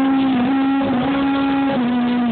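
A man singing karaoke into a microphone through a PA speaker, holding long notes that step up and down in pitch, over a backing track.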